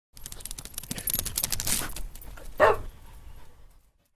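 A dog snuffling and panting, then one short bark about two and a half seconds in, which is the loudest sound; it fades out just before the end.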